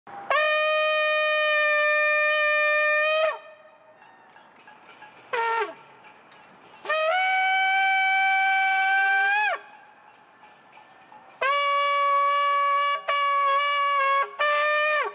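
A long, curled ram's-horn shofar blown in sustained blasts. There is a steady note of about three seconds, then a short blast that drops in pitch, then a longer, slightly higher note. Near the end another long note is broken by two brief stops.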